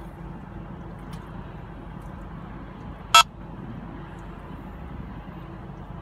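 Escort Passport Max radar detector giving a single short beep about three seconds in, a reminder tone while it holds a K-band alert near 24.17 GHz, over a steady low rumble of traffic.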